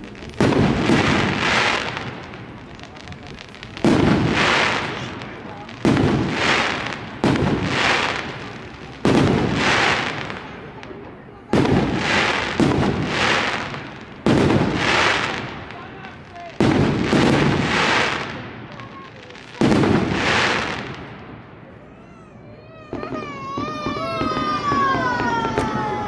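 Aerial firework shells bursting overhead: about a dozen sharp bangs a second or two apart, each trailing off in crackle. Near the end a wavering whistle starts as more rockets go up.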